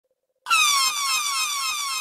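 Electronic dub-siren effect opening a dancehall juggling mix: a high pitched tone in quick repeated downward swoops, drifting lower overall. It starts suddenly about half a second in.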